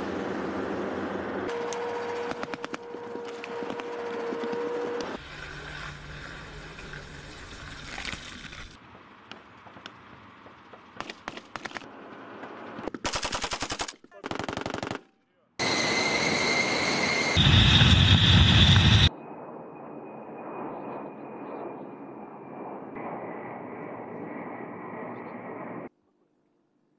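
A run of abruptly cut sounds from a military exercise. Near the middle come two short, rapid bursts of machine-gun fire from a BTR armoured personnel carrier's turret gun. These are followed by the loudest part, a few seconds of steady noise with a high whine, and then a quieter steady hum.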